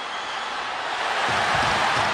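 Arena crowd cheering on a hockey fight: a steady roar of many voices that swells toward the end.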